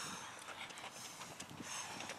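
Faint, scattered footsteps of people jogging on a running track, over a quiet outdoor hiss.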